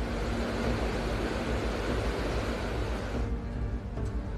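A river in flood rushing through a stone bridge arch: a steady, loud rush of water over low background music. The rushing drops away about three seconds in, leaving mostly the music.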